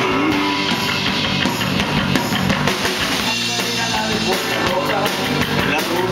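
Rock band playing live: guitar over a drum kit keeping a steady beat with cymbals.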